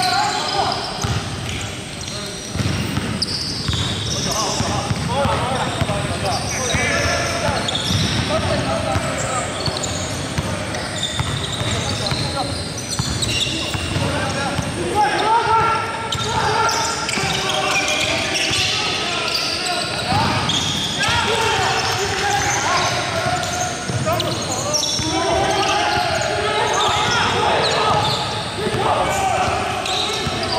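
Basketball dribbling and bouncing on a hardwood gym floor, with indistinct players' voices throughout.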